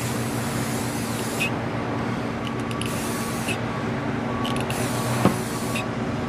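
Rust-Oleum 2X Painter's Touch clear matte aerosol spray can hissing in three bursts, the first and last each a second or more, laying a sealing coat over decals on a plastic model. A single sharp click sounds about five seconds in.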